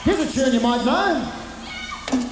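Wordless singing from the rock band on stage in short swoops, each note rising and then falling in pitch, over a held low note. The sound thins out in the second half.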